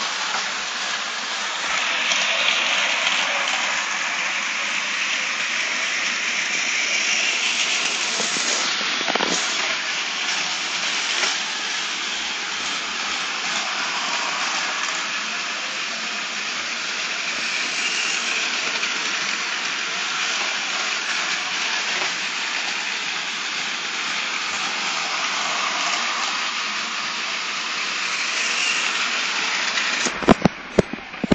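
Several battery-powered Plarail toy trains running on plastic track: a steady whirring and rattling of small motors and wheels that swells when a train passes close by.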